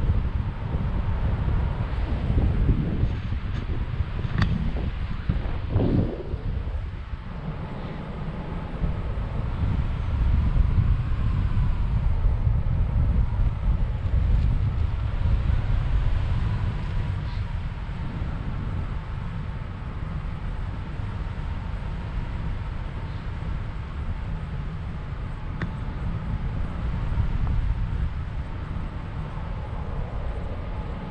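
Rushing air of a paraglider in flight buffeting the camera's microphone: a continuous low wind rumble that swells and eases.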